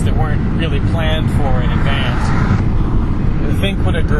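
A man's voice speaking in short, halting bits over a constant low rumble.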